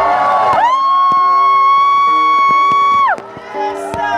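Live reggae band playing, topped by one long high held note that scoops up about half a second in and falls away about three seconds in, over lower keyboard chords and drum hits. The music drops back after the note ends.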